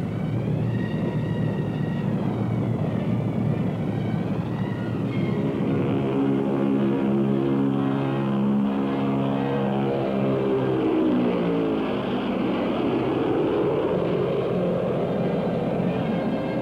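Convair B-36 bomber taking off and passing low, its six propeller engines and four jets running at full power. A deep drone whose pitch falls about ten seconds in as the aircraft goes by.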